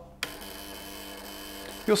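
Induction coil switched on with a click just after the start, then buzzing steadily as its interrupter switches on and off to build the high voltage for a cathode ray tube.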